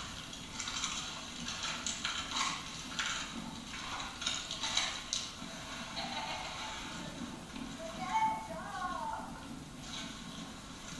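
Indistinct voices of people talking at a distance, no words clear, with a brief pitched call or laugh about eight seconds in.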